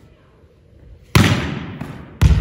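A volleyball being struck hard: one sharp smack about a second in, echoing around a gymnasium hall.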